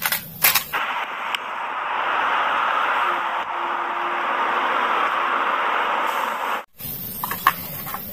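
Plastic toy trucks clatter briefly in a basket, then a steady, thin, tinny rushing noise from a real concrete mixer truck runs for about six seconds and cuts off suddenly. A few faint clicks of toys being handled follow.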